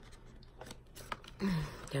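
Light, scattered clicks and rustles of a makeup palette and its packaging being handled and opened, with a short hum of a woman's voice about one and a half seconds in.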